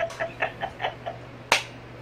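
A woman laughing softly in short breathy pulses, then one sharp clap of her hands about three-quarters of the way through.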